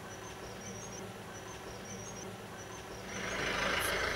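Faint background noise in a pause of talk: a steady low hum with soft, scattered high chirps, swelling into a louder rush of noise about three seconds in.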